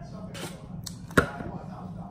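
A glass mixing bowl set down on a stone countertop: one short, sharp knock about a second in, among faint handling noises.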